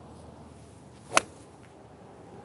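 Golf iron striking a ball on a full swing: one sharp crack a little over a second in.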